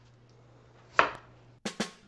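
A single knife cut through cucumber onto a wooden cutting board about a second in. Near the end, two quick drum hits open a background music track.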